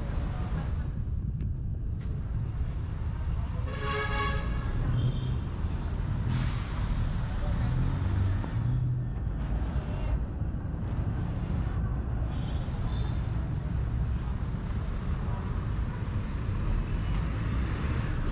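Outdoor street traffic ambience: a steady low rumble of passing vehicles, with a brief horn toot about four seconds in.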